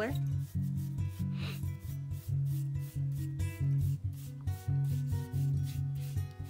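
A stiff paintbrush scrubbing acrylic paint along the edge of a stretched canvas in repeated short strokes, over background music with a steady pulsing bass line.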